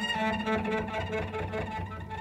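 Cello bowed, playing a sustained trill.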